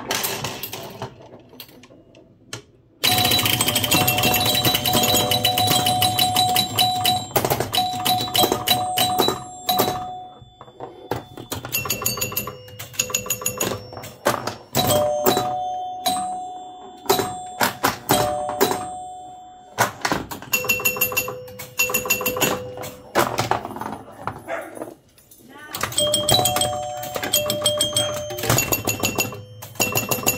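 Bally pinball machine in play: bell tones ringing again and again among rapid clacks and clicks from the flippers, bumpers and scoring mechanism. It is quieter for the first few seconds and goes briefly quiet a few times.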